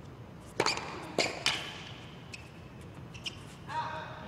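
Tennis ball struck by rackets and bouncing in a rally: three sharp pops within the first second and a half. A short voice-like sound follows near the end.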